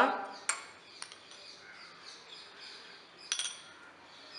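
Steel spoon clinking against a glass tumbler as soaked sabja seeds are spooned in. There is a sharp clink about half a second in, another near one second, and a quick cluster of clinks a little past three seconds.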